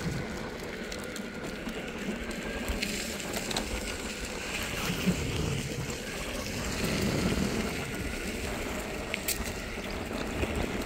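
Electric skateboard's pneumatic off-road wheels rolling fast over a dirt trail: a steady rushing rumble that swells a little about seven seconds in, with a few sharp knocks, the loudest about five seconds in.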